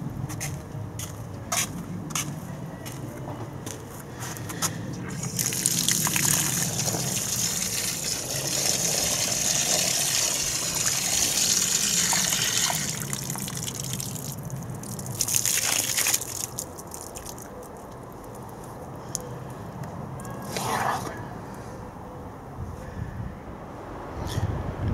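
Water gushing and splashing for several seconds as a cloth sun hat is soaked, then shorter splashes and drips about 15 s and again about 21 s in as the wet hat is lifted and pulled on.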